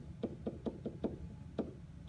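A pen tip knocking and tapping on an interactive whiteboard's hard surface as a word is handwritten: a run of about ten short, irregular taps, roughly five a second.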